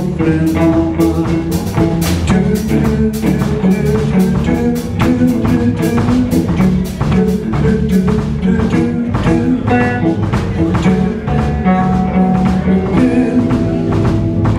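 Live blues band playing an instrumental passage: electric guitar, bass guitar and drum kit over a steady beat.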